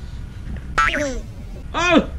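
A high-pitched voice giving two short exclamations, each sliding steeply down in pitch, the second louder, over a low background rumble.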